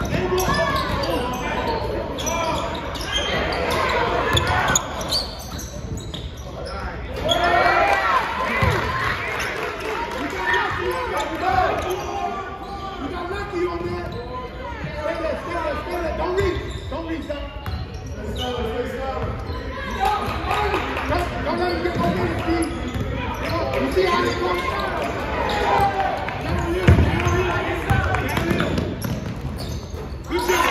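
Basketball game play in a gymnasium: voices calling out and talking over the ball being dribbled, with a few sharp thuds, all echoing in the hall.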